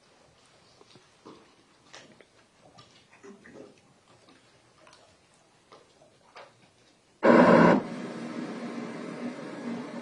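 Faint room tone with scattered small rustles and clicks, then about seven seconds in a sudden, very loud burst of noise on the audio feed, settling into a steady static hiss with a hum.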